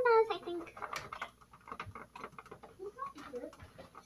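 A brief voice sound at the start, then faint irregular ticking and scratching of marker pens on shrink-plastic sheets being drawn on.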